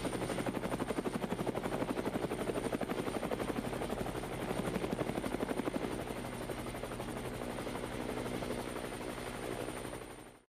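A rapid, even chopping pulse over a steady low drone, part of the show's produced outro track.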